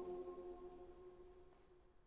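The final held chord of a mixed choir dying away in a long church reverberation, its pitches steady as it fades out.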